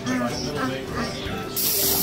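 A dental saliva ejector (suction tube) is switched on near the end: a sudden, steady sucking hiss.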